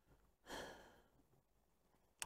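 A single short sigh, a breath let out through the mouth for about half a second.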